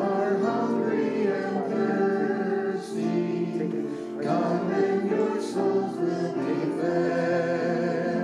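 Small mixed vocal ensemble singing a communion hymn in unison and harmony, with piano accompaniment, in a reverberant church sanctuary.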